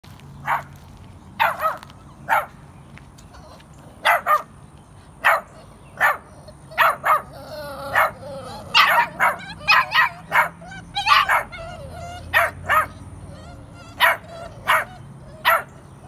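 A litter of young puppies yapping in short, sharp barks at irregular intervals, about twenty in all. Around the middle there is a drawn-out, wavering whiny cry.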